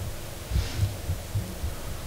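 Soft, irregular low thumps with a little faint rustling: handling and bumping noise picked up by microphones standing on a table.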